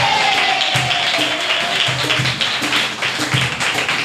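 Live flamenco-style Spanish guitar strummed in a steady rhythm, with bass notes recurring on the beat. The tail of a sung note glides down and fades out in the first second and a half.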